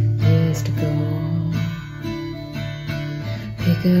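Acoustic guitar strummed in a song accompaniment, its chords ringing between strokes and dying down in the middle before fresh strums near the end, where the singing voice comes back in.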